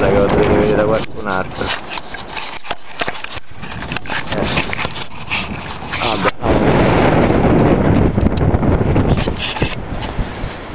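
Brief fragments of a man's speech over loud, rough rushing noise, which is heaviest in the second half.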